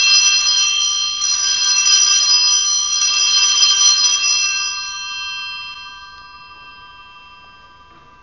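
Altar bell rung at the elevation of the chalice, marking the consecration of the wine. It rings out loudly for about four seconds, then its high tones slowly die away.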